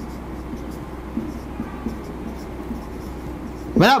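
Marker pen writing on a whiteboard in short, irregular strokes, over a steady low hum.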